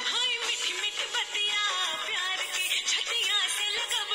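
Recorded song playing: a voice sings a melody with gliding, ornamented notes over instrumental backing.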